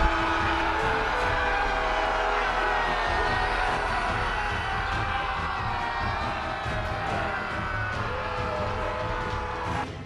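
Background music mixed with a large crowd cheering and shouting.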